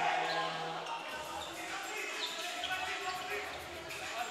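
A basketball bouncing on a hardwood gym floor during play, with short high squeaks and voices calling out in a large echoing hall.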